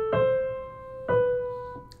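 Piano played as a dynamics example: two single notes about a second apart, each struck and ringing as it fades, the second a little lower than the first.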